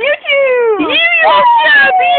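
A girl's high-pitched vocalising: loud, drawn-out squeals that slide up and down and mostly fall in pitch, one after another.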